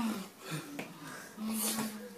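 Voices in a small room. About a second and a half in, a person makes one held vocal sound with a breathy, wheezing hiss.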